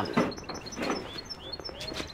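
Small caged birds chirping: quick, repeated high chirps several times a second, with faint voices underneath.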